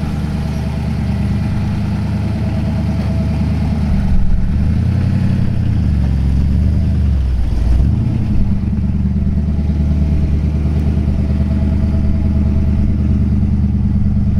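1966 Ford 289 V8 with dual Smitty mufflers running as the 1932 Ford coupe drives off. The exhaust note climbs about four seconds in, dips briefly near seven and a half seconds, then holds steady.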